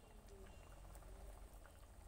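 Water faintly boiling in an iron wok, with small scattered pops.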